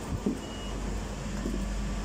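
Steady low hum and background noise inside a Peak Tram car standing at the boarding platform, with one short, faint high beep about half a second in.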